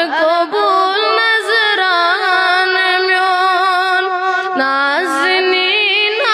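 A boy singing a Kashmiri naat, one long ornamented vocal line with held notes and sliding pitch bends; the melody drops lower about four and a half seconds in.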